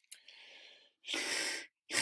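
A man blowing air out past the sides of his flattened tongue to demonstrate the Welsh voiceless lateral fricative, the 'll' sound: a breathy hiss with no voice in it, faint at first, then louder for about half a second starting about a second in.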